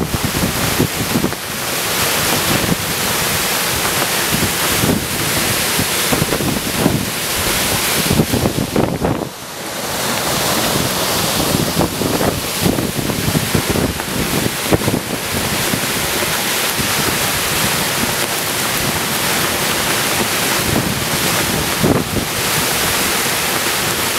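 Strong thunderstorm gust-front wind with driving rain, the gusts buffeting the microphone in rough, uneven blasts. The noise dips briefly about nine seconds in, then comes back as loud.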